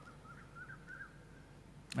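A bird chirping faintly: a few short, wavering notes in the first half, over a faint low hum.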